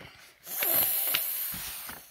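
A page of a paper picture book being turned, a rustle of paper starting about half a second in and fading out over the next second and a half.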